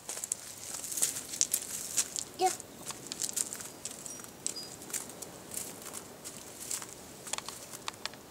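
Irregular crunching and crackling of footsteps on gravel and dry leaf litter.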